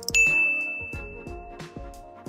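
A click followed by a single bright bell ding, a notification sound effect, ringing out and fading over about a second and a half. Background music with a steady beat plays under it.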